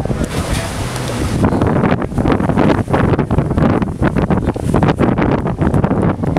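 Gusty wind buffeting the microphone: a loud, rough rush that rises and falls irregularly.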